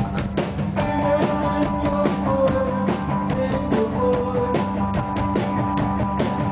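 Live rock band playing, with a drum kit keeping a steady beat under guitars.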